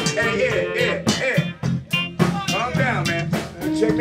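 Live band playing: electric guitar with bent notes over electric bass and a drum kit.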